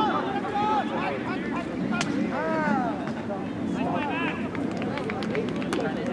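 Shouts and calls from players and spectators across an open soccer field, over a low murmur of voices, with a few sharp knocks about two seconds in and again near the end.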